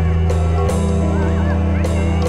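Music: a steady low drone under a few percussion hits, with a wavering, gliding high lead line.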